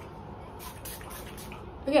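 A few short hisses of a pump spray bottle of It's a 10 Miracle leave-in spray misting onto hair.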